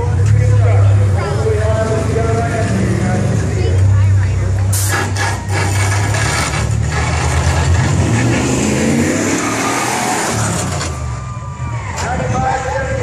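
Classic car engines driving slowly past in a deep, steady rumble that swells twice in the first five seconds, with a few sharp crackles around the middle.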